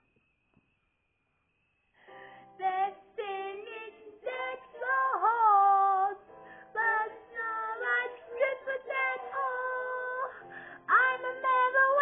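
A song with female vocals and accompaniment playing from a television's speakers. The sound drops out completely for the first two seconds or so, then the singing comes back in.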